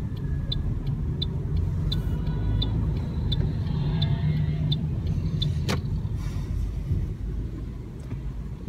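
Toyota Corolla 1.33 heard from inside its cabin while driving: a steady low rumble of road and engine noise. Over it a turn-signal indicator ticks evenly, about three ticks every two seconds, and stops a little past halfway. One sharp click comes shortly after.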